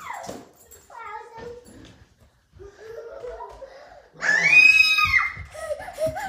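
A young child screams loudly and high for about a second, about four seconds in, during a chase game, after quieter squeals and voice sounds.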